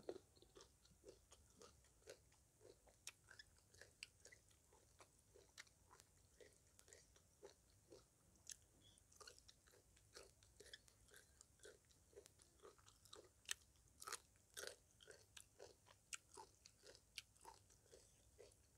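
Faint chewing and crunching of a mouthful of papaya salad close to the microphone: many short, soft mouth clicks, with a few louder crunches about three-quarters of the way through.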